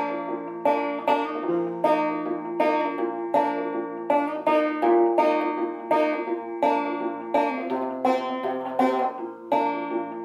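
An 1888 Luscomb five-string banjo, tuned about two frets below gCGCD, played in two-finger style: the two-count lick, with the thumb picking out the melody while the index finger plucks the first and second strings together. A steady run of plucked notes, with strong accents about twice a second.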